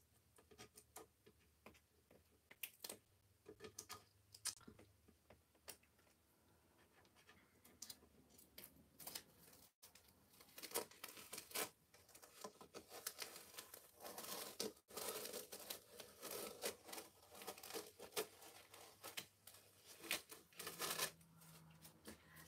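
Faint crackling and rustling of an adhesive craft stencil being peeled off a chalk-pasted surface: sparse small clicks at first as fingers work the edge up, then a denser, continuous crackle through the second half as the sheet comes away.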